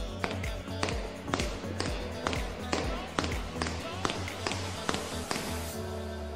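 Background music with a steady beat of drum hits, about two a second, over a pulsing bass line, with a rising swish near the end.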